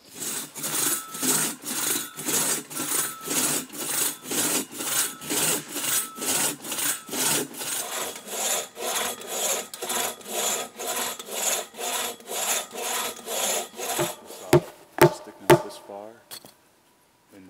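Two-man crosscut saw cutting through ash wood, rasping in even push-pull strokes at about two and a half a second. Near the end the sawing stops and three or four sharp knocks follow.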